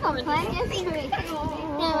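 Voices laughing and exclaiming, a child's voice among them, with one long drawn-out vocal sound in the second half.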